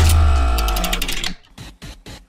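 Short music sting between news items: a deep bass hit under a held chord with rapid ticking over it, fading out over about a second and a half, followed by a few faint clicks.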